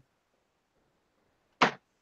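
Near silence, broken about one and a half seconds in by a single short spoken word.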